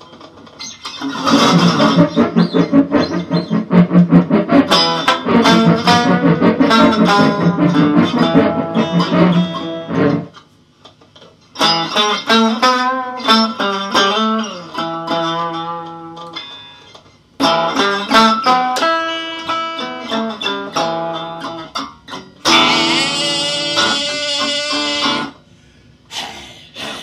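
Gibson ES-175D hollow-body electric guitar played loud through an amplifier in free, noisy bursts of fast strummed chords and picked notes, with some bent pitches. The playing breaks off abruptly about ten seconds in and again at about seventeen seconds, and turns brighter and harsher near the end.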